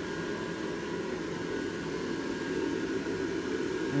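Gemmy airblown praying mantis inflatable's built-in blower fan running steadily, a constant whir with a faint steady hum, keeping the figure fully inflated.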